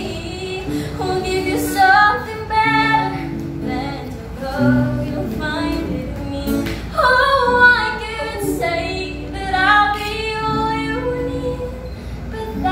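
A young woman singing solo, accompanied by an acoustic guitar.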